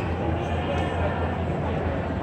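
Steady outdoor street ambience: a constant low rumble under faint, distant crowd voices.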